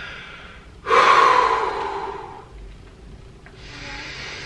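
A man breathing heavily, out of breath: a loud, long breath about a second in, then a softer one near the end.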